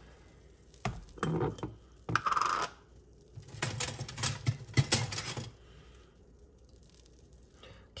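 Kitchenware handled on a countertop: short clinks, knocks and scrapes in several bursts over the first five or so seconds, as a glass jar's lid comes off and a silicone strainer basket is set down beside it.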